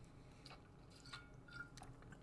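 Near silence: room tone, with a few faint mouth clicks during a pause in speech.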